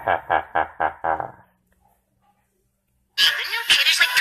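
A man's drawn-out villain laugh, a run of quick 'ha ha ha' pulses that stops about a second and a half in. After a short silence, loud music cuts in suddenly about three seconds in.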